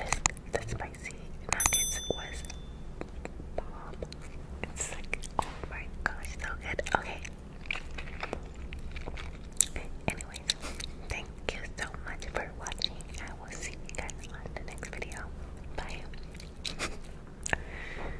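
A person chewing and eating close to the microphone, with many sharp wet mouth clicks and soft whispering.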